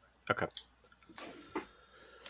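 A brief spoken "okay", then faint, wet mouth sounds of chewing close to the microphone.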